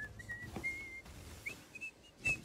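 A string of short, high whistled notes, one after another at slightly different pitches, played faintly from the cartoon's soundtrack.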